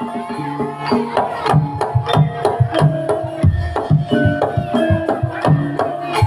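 Javanese jaranan gamelan accompaniment played live: hand-drum (kendang) strokes in a steady driving rhythm over held, ringing notes from metal percussion.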